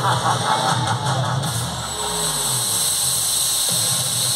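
Stage show music gives way about a second and a half in to a loud hissing whoosh that rises in pitch, with a low tone falling beneath it. It cuts off near the end, as the stage's spark fountains and smoke jets fire.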